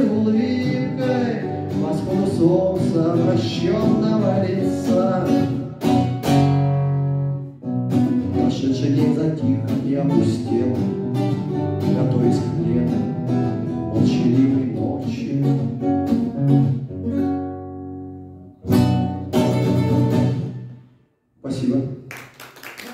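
Acoustic guitar strummed and picked in the final bars of a song; the playing breaks off briefly near the end before a last chord.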